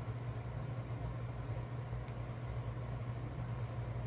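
Steady low background hum, with a few faint light clicks about two seconds in and near the end.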